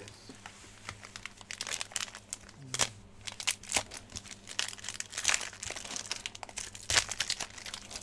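Cellophane wrapper of a trading card pack crinkling in the hands as it is unwrapped: a dense run of irregular crackles from about a second and a half in.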